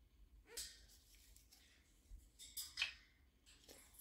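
Near silence, with a few faint, brief rubbing sounds from gloved hands twisting a rubber putter grip on the shaft to line it up: one about half a second in and a small cluster near three seconds in.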